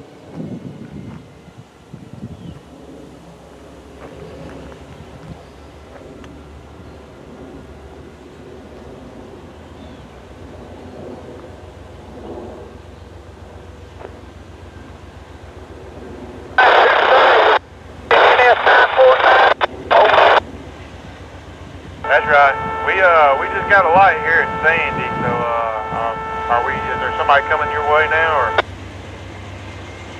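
Railroad radio chatter over a scanner: quiet wind and open-air background, then a short run of clipped transmission bursts a little past halfway, followed by a longer transmission with a steady chord of several tones running under the voice, cutting off sharply near the end.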